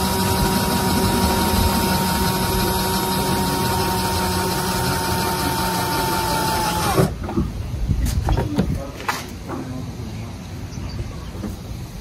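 Cordless drill running steadily at speed as it bores a tiny pilot hole for a spoiler screw, then stopping about seven seconds in. A few light clicks and knocks follow.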